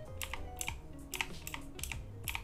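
Computer keyboard keys tapped in quick succession, about five clicks a second, stepping an animation back and forth a frame at a time.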